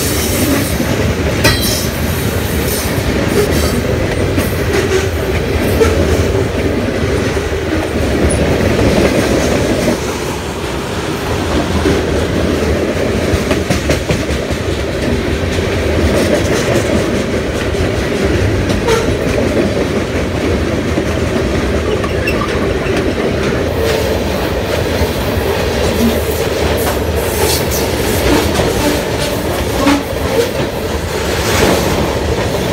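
CSX manifest freight train's cars (covered hoppers, tank cars and gondolas) rolling past at close range: a steady rumble with the clatter of the wheels over the rails.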